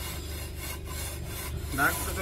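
Wooden straightedge scraping over a wet cement mortar floor as it is drawn back and forth to level the screed, a gritty rasping sound in repeated strokes.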